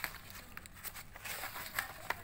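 Loose sheets of paper rustling as they are handled and turned, with several short crinkles.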